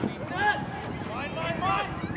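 Several voices calling out across a soccer pitch, overlapping in short rising and falling calls, with one sharp knock right at the start.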